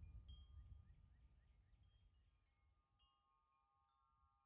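Very faint chimes: scattered short, high pings and a few held ringing tones over a low hum, all fading away toward the end.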